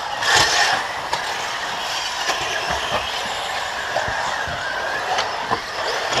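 Radio-controlled buggies racing on a dirt track: a steady mix of motor whine and tyre noise with faint rising and falling whines, swelling briefly about half a second in, and several short sharp knocks scattered through.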